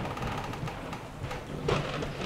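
Heavy rain falling, with a sharp hit near the end.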